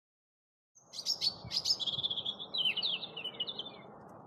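A tit's high chirping calls, a quick run of short notes starting about a second in and trailing off near the end, over a faint steady outdoor background noise, played at normal speed.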